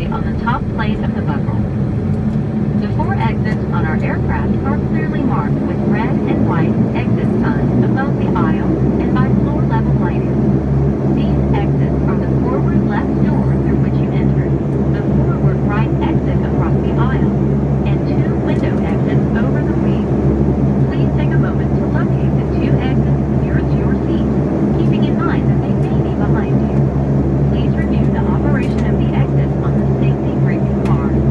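Saab 340B+ turboprop engine and propeller running, heard from inside the cabin: a steady low drone with several steady hum tones, growing a little louder over the first several seconds.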